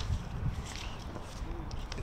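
Faint, steady background ambience of an outdoor cricket ground, with a brief faint voice-like sound near the end.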